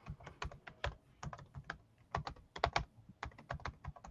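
Typing on a computer keyboard: faint, quick, irregular key clicks coming in short runs.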